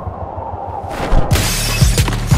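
A loud shattering crash about a second and a half in, its noise hanging on to the end, as a music track with a low, steady beat of about two thumps a second comes in under it.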